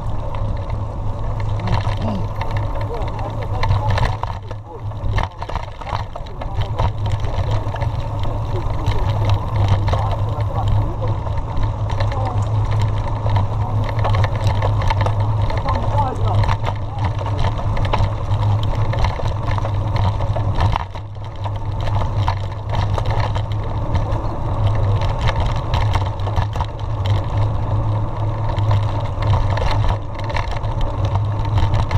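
Steady wind rumble on a bike-mounted camera's microphone as a mountain bike rolls down a rough dirt road, with frequent knocks and rattles from the bike over the bumps.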